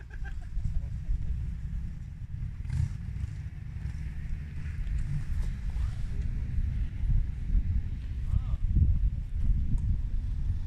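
Wind rumbling on the microphone, with faint voices in the background and no distinct firework bangs.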